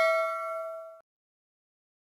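Ringing tail of a bell-like ding sound effect for an animated notification bell: several steady tones fading, then cut off suddenly about a second in, followed by silence.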